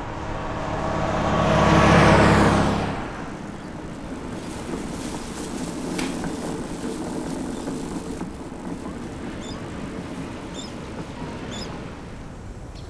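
A car passing close by, swelling to a peak about two seconds in and cutting off sharply about a second later. Steady outdoor background noise follows, with a few faint high bird chirps near the end.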